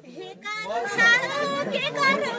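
High-pitched voices talking and calling over a background of crowd voices, during a break in the folk music accompaniment.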